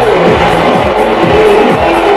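Electronic dance music from a DJ set playing loud, with a steady four-on-the-floor kick drum of about two beats a second under sustained synth chords.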